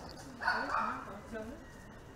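A dog barking briefly, faint in the background, about half a second in.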